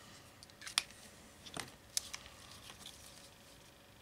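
A few light, sharp clicks and taps of hand tools handled on a workbench, as a marker is set down and a rotary leather hole punch is picked up.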